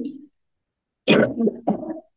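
A woman coughing: a short run of three coughs starting about a second in, the first the loudest.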